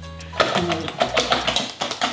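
A wire whisk beating eggs and sugar in a stainless-steel bowl: quick, regular strokes of about four a second that start about half a second in. Background music with a steady bass line plays underneath.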